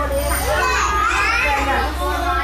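A roomful of young children talking and calling out over one another, high voices overlapping, with a steady low hum underneath.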